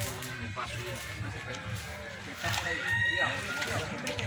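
Voices talking, with a rooster crowing in the background in the second half.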